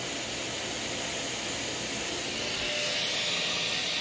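Steady rushing hiss of a CNC router's dust-extraction vacuum running, growing a little louder about two and a half seconds in, with a faint steady tone joining near the end.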